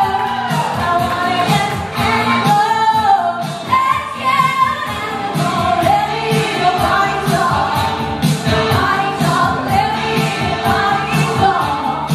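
A woman singing into a microphone over backing music with a steady beat.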